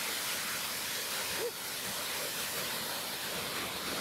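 Whitewater rapid on a river, the water rushing as a steady hiss, with a slight dip in level about a second and a half in.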